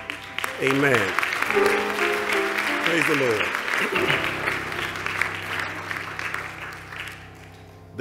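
Congregation applauding, with a few voices calling out near the start and middle, over a steady held musical chord; the clapping dies away toward the end.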